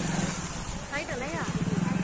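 A steady low hum with fine, even pulsing, with a person's voice heard briefly about a second in.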